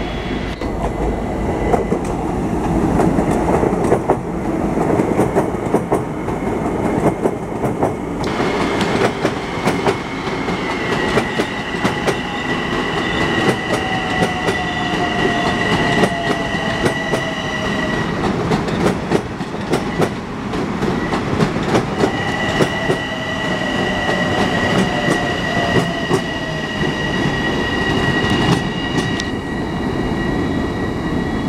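Long Island Rail Road commuter trains running past, their wheels clacking with many sharp clicks over rumbling track noise. Twice a steady high-pitched whine holds for several seconds, along with a lower tone that falls in pitch.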